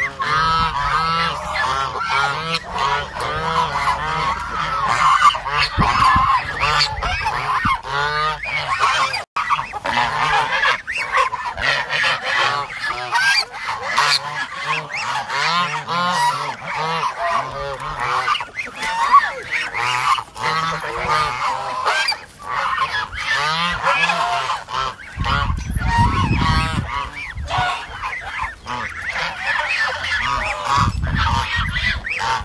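A flock of white domestic waterfowl calling continuously at feeding time, many calls overlapping without a break.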